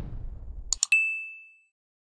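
Two quick clicks followed by a single bright bell ding that rings and fades out over under a second: a subscribe-button and notification-bell sound effect. A low rushing noise underneath stops just before the clicks.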